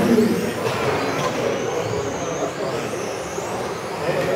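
Radio-controlled racing cars running laps on a track, their high-pitched motor whine rising and falling as they speed up, brake and pass.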